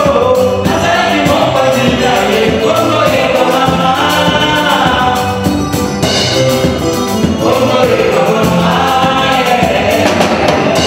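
Gospel group of women and men singing together into microphones, in harmony, over a live band with drum kit and cymbals.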